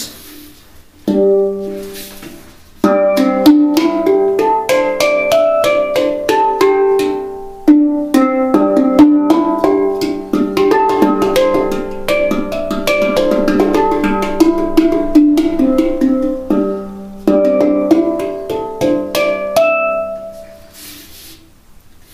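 Nine-note Caisa Backpac handpan tuned to C pentatonic, played with the hands: a few single ringing notes open, then a flowing melody of struck notes, a brief pause about three-quarters of the way through, and the last notes dying away near the end.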